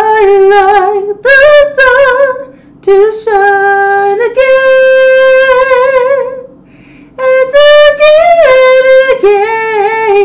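A woman singing unaccompanied, holding long notes with vibrato, in three phrases with short breaks between them.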